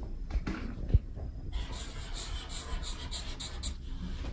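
Felt-tip marker drawn across paper in a quick run of short strokes, about five a second, shading along a number line. A light knock on the table comes about a second in.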